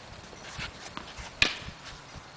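A paddle-tennis ball struck with a wooden paddle: one sharp knock about one and a half seconds in, after a few fainter knocks.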